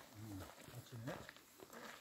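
Faint, indistinct voices of people talking, in short bursts, against quiet outdoor background.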